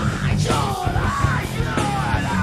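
Heavy rock band demo recording: distorted guitars and drums with a yelled vocal line that bends up and down in pitch.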